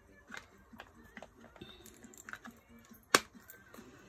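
Quiet handling of paper and cardstock on a craft mat: soft rustles and light taps, with one sharp click a little after three seconds.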